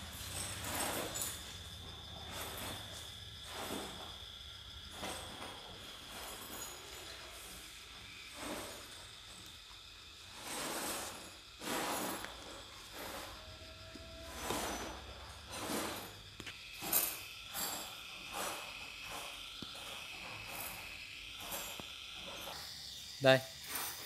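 A 12 V Mitsuba brushless motor and its controller running quietly, heard as a faint steady high whine that drops to a lower pitch about two-thirds of the way through. Light clicks and knocks of the parts being handled come through irregularly over it.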